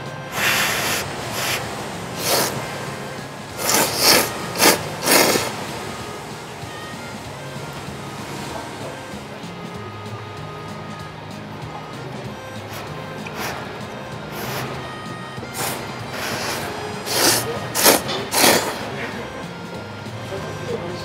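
Loud slurping of thick ramen noodles in short bursts, with a cluster of three or four slurps about four to five seconds in and another cluster near the end. Background music plays underneath.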